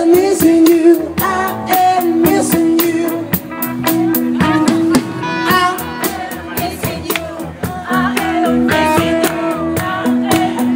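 Live rock band playing: a man singing over electric guitar and drum kit, with a steady beat.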